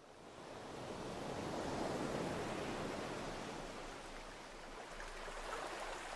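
A steady rushing noise, like surf or wind, fading in over the first two seconds and then holding, with a low hum underneath.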